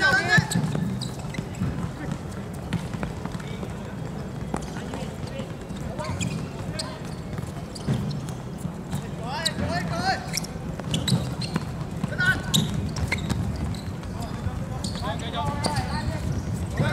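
Footballers shouting short calls to each other during play, with the thuds of the ball being kicked and feet on the artificial turf, over a steady low background rumble. Shouts come at the start and again in a cluster past the middle.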